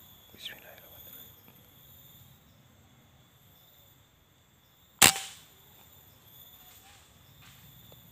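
A single sharp shot from a scoped air rifle about five seconds in, with a brief ring-off after it, against faint quiet background.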